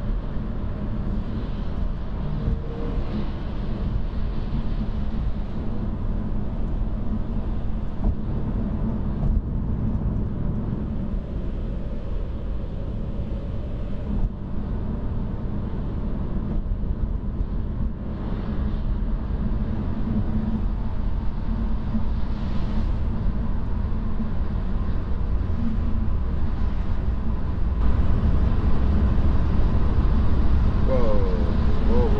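Steady road and tyre noise inside the cabin of a Tesla driving at highway speed on a wet, snowy road, growing a little louder near the end.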